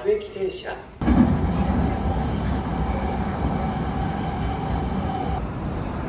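A brief voice, then from about a second in the steady rumble of an electric train running, with a held whine that stops near the end.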